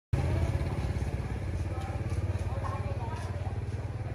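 A motorbike engine idling steadily with a low, fast pulsing, and faint voices in the background.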